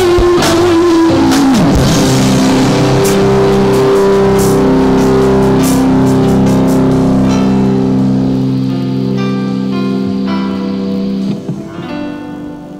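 Live rock band playing: electric guitar chords over a drum kit, with cymbal crashes in the first half. After that, held notes ring on with keyboard, and the sound drops away near the end.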